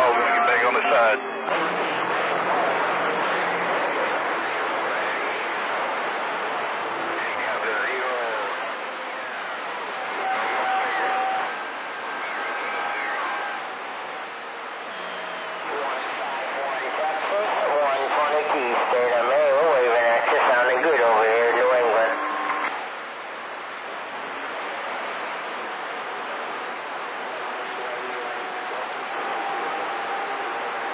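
CB radio receiving skip on channel 28: steady static with garbled, unintelligible distant voices and whistling tones that come and go. The signal fades and the noise drops about three quarters of the way through.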